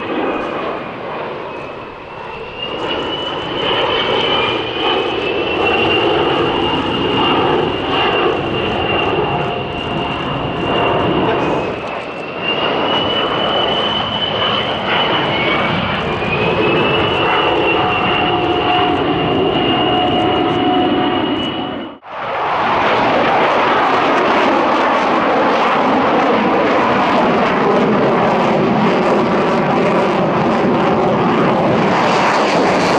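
Beriev Be-200ES amphibian flying past, its turbofan engines giving a high whistling whine that slides in pitch over a steady engine noise. About two-thirds of the way through, the sound cuts sharply to a fighter jet's even, dense engine noise with no whistle.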